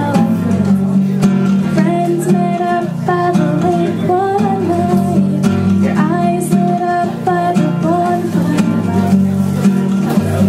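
A woman singing a song while strumming a nylon-string classical guitar, with the melody held in long sung notes over steady chords.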